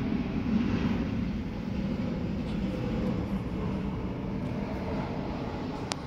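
Domestic cat purring steadily, a close low rumble, with a single sharp click near the end.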